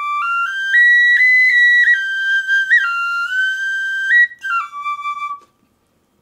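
A very tiny four-hole pocket flute playing a short melody in a slightly modified minor scale: high, clear notes stepping up the scale and back down to the starting note, stopping about five seconds in.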